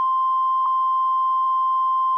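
A steady, high-pitched test tone, the continuous sine-wave tone that accompanies a television test pattern, holding one pitch with a couple of tiny glitches in it.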